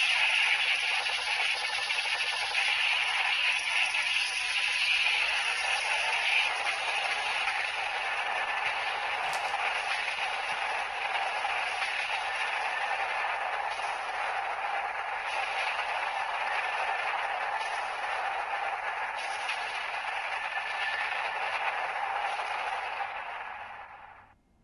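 A steady rushing hiss, a sustained sound effect that fades out near the end.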